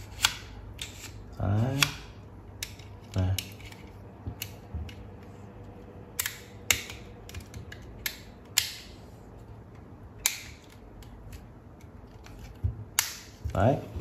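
Plastic parts of a Braun Series 5 electric shaver's housing and head clicking and snapping as they are pressed and fitted together: a dozen or so sharp, separate clicks at irregular intervals.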